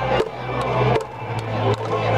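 Japanese pro-baseball outfield cheering section performing a batter's cheer song: massed fans chanting over trumpets, with sustained brass notes and sharp drum hits every half-second or so.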